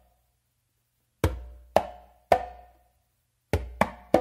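Conga drum played by hand: the opening figure of a mambo tumbao, a low bass stroke followed by a closed slap with the right hand and a closed slap with the left. The three strokes come about half a second apart about a second in, and the figure starts again near the end.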